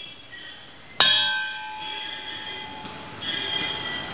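A metal object, like a bell, struck once about a second in, ringing on with several steady tones that fade slowly.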